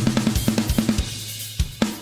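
Acoustic drum kit with Meinl cymbals played in a solo: a fast run of strokes on the drums, about eight a second, over ringing cymbals and a low drum tone. It thins out to a couple of separate heavy hits near the end.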